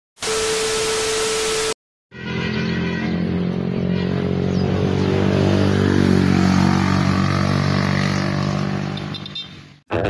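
A second and a half of loud hiss carrying one steady tone, cut off abruptly. Then a motor vehicle's engine running at a steady cruise with wind and road noise, heard from on board as it crosses a bridge, fading out near the end.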